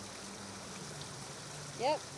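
Steady splashing rush of a fountain's water, with a faint low hum beneath it. A short spoken "yep" comes just before the end.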